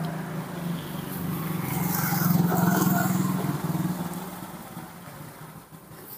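A passing motor vehicle's engine hum, growing louder to a peak two to three seconds in and then fading away.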